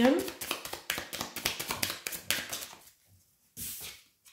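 A hand-held deck of oracle cards being shuffled: a rapid run of soft card clicks that stops after nearly three seconds, then a brief brush of a card being drawn near the end.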